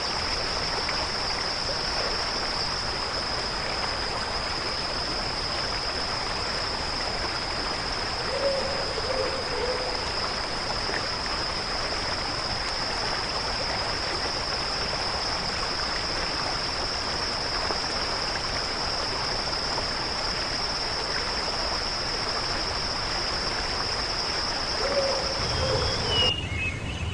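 Tropical rainforest at night: a steady, high-pitched insect chorus drones without a break over a constant hiss. A short low animal call sounds twice, about eight seconds in and near the end.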